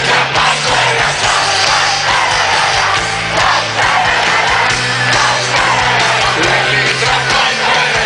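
A live rock band playing at full volume in a stadium, heard from among the audience, with the crowd's cheering and yelling mixed in.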